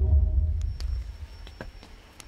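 Deep bass from a concert PA's subwoofers: a low note with a few fainter higher tones, loudest near the start and dying away over about a second and a half, with a few faint clicks.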